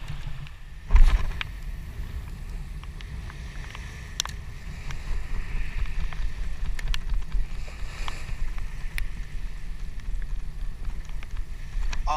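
Wind buffeting an action camera's microphone, giving a steady low rumble. A sharp thump comes about a second in, with a few small clicks later. A light hiss grows from about halfway through.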